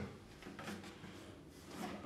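Faint handling noise of a cello being lifted and tilted on its endpin: a few soft knocks and rubs over a quiet room.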